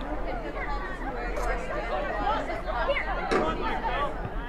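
Several people's voices overlapping in chatter and calls, with no clear words.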